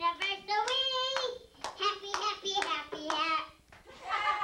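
A young child singing in a high voice, in short phrases with brief gaps, and a few sharp taps among the notes.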